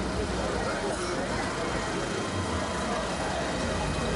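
Fendt tractor's diesel engine running close by, a steady low rumble, with people's voices around it.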